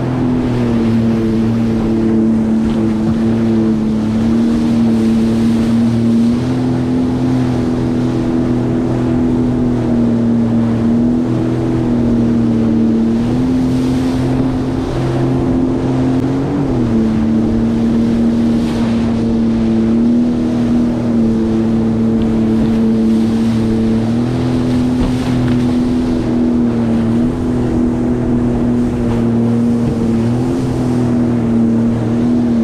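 Sea-Doo GTX 170 personal watercraft's Rotax three-cylinder engine running steadily at part throttle, its pitch stepping slightly up and down with small throttle changes and dipping briefly about two-thirds of the way through. Under it is the constant rush of turbulent river water against the hull.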